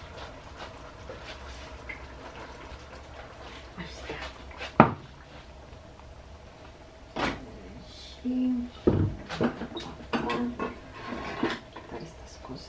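Cookware being handled: scattered knocks and clatter of pans, a cutting board and a glass pan lid being moved and set down. The sharpest knock comes about 5 seconds in, with a run of smaller clatters in the second half.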